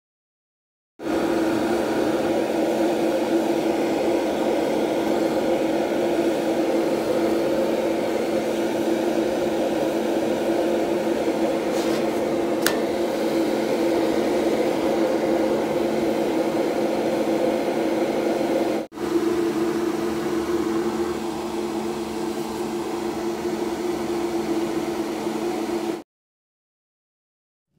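Steady hum and rush of an electric fan running, with a few fixed hum tones under it. A single faint click comes about halfway through, and the sound breaks off for an instant a little later before carrying on.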